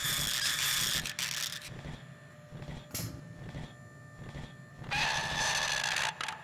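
Robot servo whirring sound effects in two spells, in the first second and a half and again near the end, with a single click about halfway through over a low steady hum.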